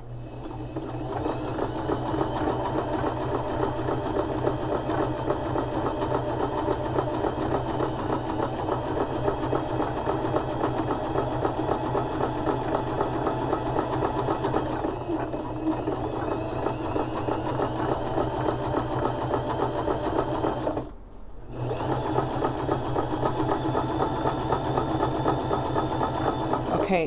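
Home sewing machine running steadily, stitching a close zigzag around the edge of an appliqué. It stops briefly about three quarters of the way through, then runs on again.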